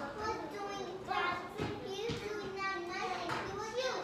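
Young children's voices talking and chattering over one another.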